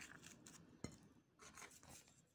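Faint crackle and rustle of dry Cici Bebe baby biscuits being crumbled by hand onto whipped cream, with one small click a little before a second in.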